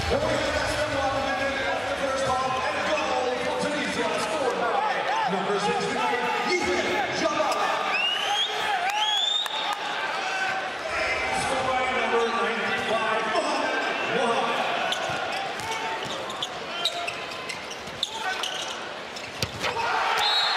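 Handball being bounced on an indoor court, with voices and hall echo throughout and a few sharp rising squeaks about eight to nine seconds in.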